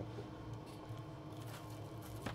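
Quiet room with a steady low hum, and a few faint soft clicks of croquettes being picked up from a plate by hand.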